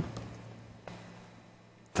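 A pause in a man's speech: faint steady low hum of room tone, with two soft clicks, one just after the start and one about a second in.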